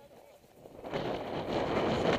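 Wind rushing over a camera microphone carried on a horse at speed, rising sharply about a second in, with the horse's hoofbeats underneath.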